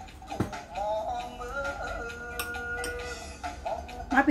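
Background music with a singing voice holding long, steady notes.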